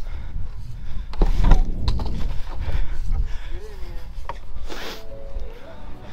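Rumbling wind and handling noise on a handheld camera's microphone, with scattered knocks and clicks as the camera is carried through the snow. Background music comes in near the end.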